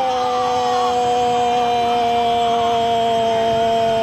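A football commentator's long held goal shout: one unbroken, loud vowel on a steady pitch that sags slightly, cut off abruptly near the end.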